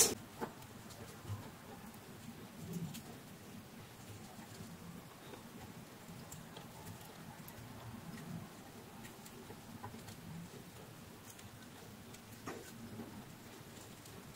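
Faint scratching and small clicks of thin wire leads being twisted together by hand on a wall fan's motor stator.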